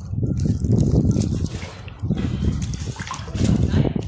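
River water sloshing and splashing close to the microphone, coming in uneven surges with small splashy crackles.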